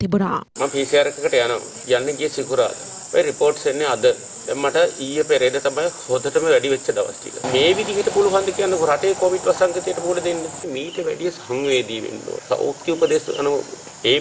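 Crickets chirping in a steady high-pitched drone under a man talking; the drone weakens about eleven seconds in.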